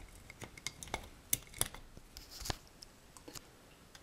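Small clicks and light scraping as fingers press a wire retaining clip into the ring of a recessed ceiling downlight to hold the lamp in. Several sharp clicks, the clearest a little after a second in and about two and a half seconds in.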